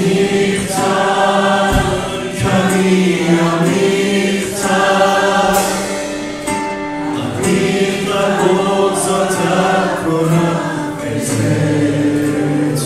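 Live Christian worship song: several voices singing together in held, slow phrases, accompanied by a strummed acoustic guitar.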